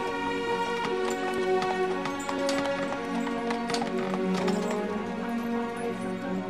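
Background music with long held notes; over it, horse hooves clip-clop irregularly on a hard road surface.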